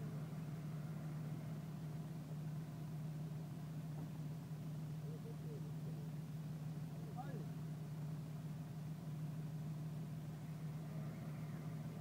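Off-road SUV's engine idling steadily, a constant low hum with no revving, while faint voices come and go in the background.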